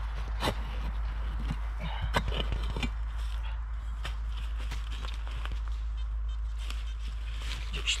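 Steel spade digging into forest soil and leaf litter: a few sharp chops in the first three seconds, then quieter scraping and rustling.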